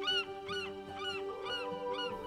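Short arched bird calls repeating several times a second over background music with a held chord.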